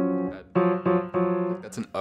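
Steinway grand piano: a held chord dies away, then a chord is struck three times in quick succession. A voice begins near the end.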